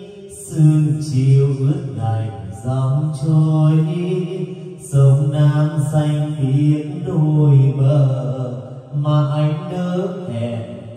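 A singer's voice in a slow Vietnamese song, sustained notes in long phrases with short breaks between them, with music.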